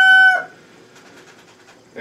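The held last note of a rooster's crow, ending abruptly about half a second in, then a quiet barn background.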